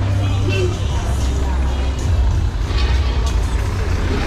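Street noise with a minibus engine running close by, a steady low hum, under scattered voices of passers-by and music.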